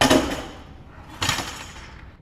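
Loaded Olympic barbell being set back onto a bench rack's metal hooks: two metal clanks, one right at the start and one just over a second later, each ringing briefly as it fades.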